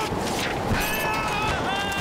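Strong storm wind sound effects, a dense steady rush, with a man crying out over it.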